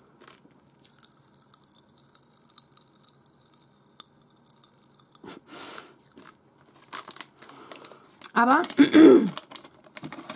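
Strawberry popping candy crackling in a mouth: a dense run of faint tiny pops and crackles, fading out about five seconds in.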